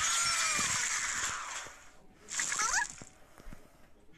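Cartoon sound effect of a flood of gumballs pouring out of a gumball machine: a rushing, splashing cascade that fades out a little under two seconds in, followed by a short burst with rising squeaks.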